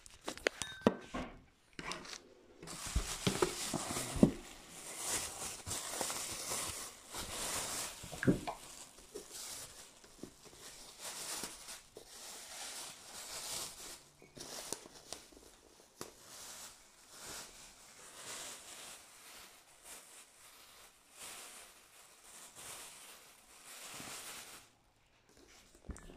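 Thin plastic bag crinkling and rustling in irregular bursts as a book is pulled out of it and the wrapping is crumpled, with a few knocks in the first several seconds.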